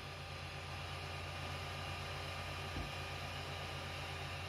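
Creality Ender 6 3D printer running a print: a steady whir from its cooling fans and stepper motors as the print head moves, with one faint low bump near three seconds in.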